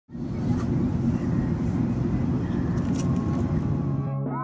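Airliner cabin noise in flight, heard from a window seat: a steady low rumble of engines and rushing air.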